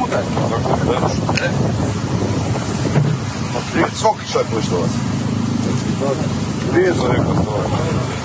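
Army cargo truck's engine running steadily, with wind buffeting the microphone and men's voices cutting in now and then.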